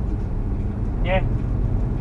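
Steady low rumble of engine and road noise inside a van's cabin while it drives along in highway traffic.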